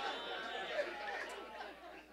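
Audience reacting with many overlapping voices, chuckles and chatter that fade away over the two seconds.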